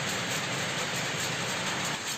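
A shed full of shuttle powerlooms weaving at once: a steady, dense mechanical clatter of rapid repeated beats.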